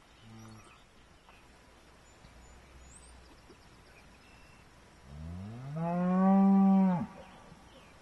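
Cattle mooing: a short faint low moo near the start, then one long loud moo about five seconds in that rises in pitch, holds steady for about a second and cuts off.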